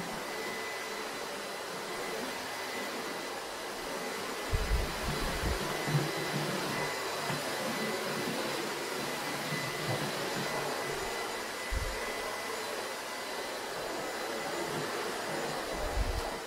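Vorwerk Kobold upright vacuum cleaner with its EB370 electric brush head running steadily: a rush of air with a thin high whine over it. A few low bumps come about five seconds in and again near twelve seconds.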